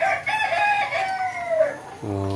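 A rooster crowing once: a single long crow of about a second and a half that drops in pitch at the end.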